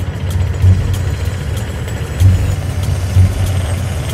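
Metal-spinning lathe running with a steady low hum and recurring louder swells, a hand-held spinning tool being pressed against the 18-carat gold cup blank turning on the chuck.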